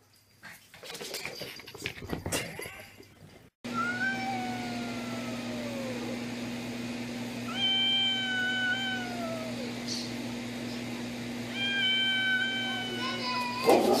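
A cat yowling in three long, drawn-out calls a few seconds apart, each sliding down in pitch at its end, over a steady low hum. Before the calls there are a few seconds of scattered knocks and rustling.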